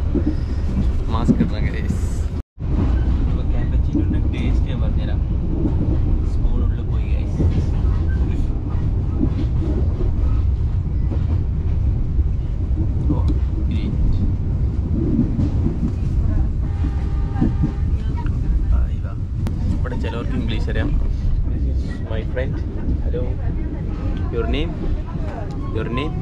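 Passenger train running, a steady low rumble inside the carriage, with other passengers' voices heard faintly. The sound cuts out completely for a moment about two and a half seconds in.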